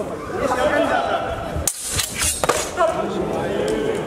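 Voices and chatter of people in a large, echoing sports hall, with a few sharp clacks in quick succession about two seconds in.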